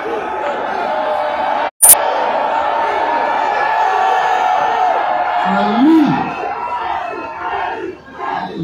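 Large crowd of supporters cheering and shouting, many voices at once, with one shout rising and falling in pitch near six seconds in. About two seconds in the sound cuts out briefly and comes back with a sharp click.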